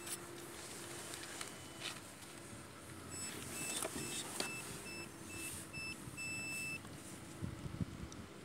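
Optical-fibre fusion splicer giving a run of short electronic beeps, about two a second, ending in one longer beep, with a couple of sharp clicks of fibre and splice-tray handling in between.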